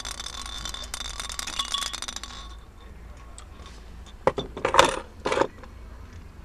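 Glass marble-stoppered soda bottle being handled. A hissing, scraping stretch lasts about two and a half seconds, then a few sharp clinks and knocks come a little after four seconds in.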